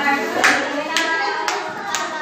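A group clapping in time, about two claps a second, over voices singing and talking.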